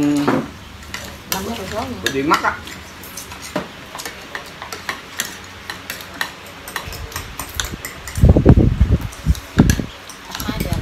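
Chopsticks and spoons clicking against porcelain bowls and plates as people eat, with a brief spoken phrase near the start. Near the end comes a cluster of loud, low thumps.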